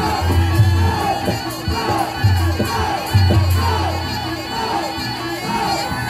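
Live Reog Ponorogo gamelan accompaniment playing loudly, with a crowd shouting and cheering over it. Repeated short falling cries or notes run through it.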